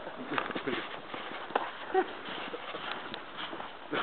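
Irregular footsteps in snow, soft crunches, with faint voices in the background.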